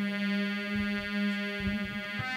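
Music: an electronic keyboard holding one steady note, with no drum beats under it.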